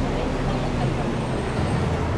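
Steady outdoor city background noise: a low traffic rumble with faint voices.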